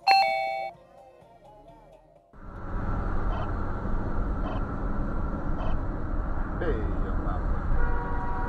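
A short electronic ding-dong chime of a few steady tones, then, a little over two seconds in, the steady engine and road noise of a car driving along a city street.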